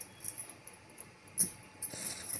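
Handling noise as a knitted sweater is moved about by hand: faint rustles and light clicks, with one sharper click about one and a half seconds in.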